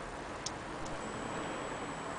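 Antique Vienna wall clock movement ticking as its pendulum swings: one sharp tick about half a second in, over a steady background hiss.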